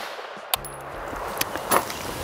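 Ruger PC Charger 9mm pistol fired in semi-auto: two shots about a second apart, with a fainter click between them.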